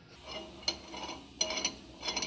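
Stainless steel parts of a samosa machine's forming head clinking and scraping as they are handled, with two sharp metallic clicks about a second apart.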